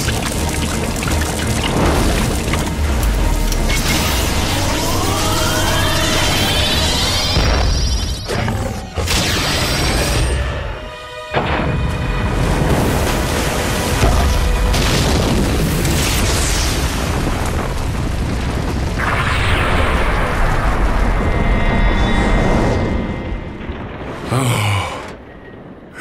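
Cartoon sound effects of a large explosion: loud booming and rumbling with rising electronic sweeps, over a dramatic background score. The sound drops briefly about eleven seconds in, swells again, and dies away near the end.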